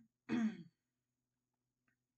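A woman clearing her throat: two short bursts, the second and longer one just under half a second long, falling in pitch.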